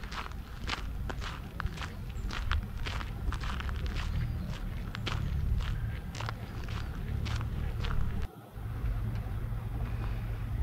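Footsteps on a gravel path, sharp crunches about two a second, over a steady low rumble. The sound cuts out briefly a little after eight seconds, then the rumble resumes.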